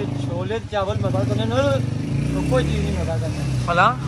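A man talking over the low, steady drone of a road vehicle's engine, which shifts in pitch in the second half.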